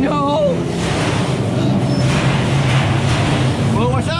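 A loud, steady rushing noise with a low hum underneath. A short falling vocal sound comes at the very start and another brief voice near the end.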